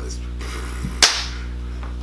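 A single sharp hand clap about a second in, over a steady low electrical hum.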